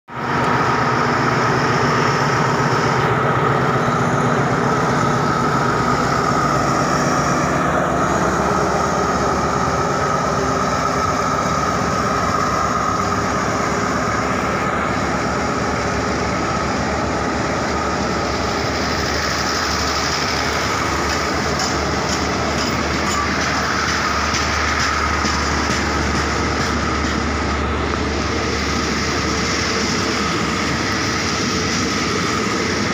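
A diesel-hauled passenger train pulls out and passes close by. The locomotive's engine drones at first, then the coaches roll past with steady wheel-and-rail noise and some clicking from the wheels.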